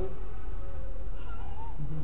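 Steady low hum of the recording, with a faint short call that rises in pitch about a second and a half in.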